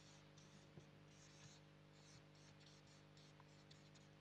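Faint strokes of a felt-tip marker writing on flip-chart paper: a series of short scratchy strokes, over a steady low hum.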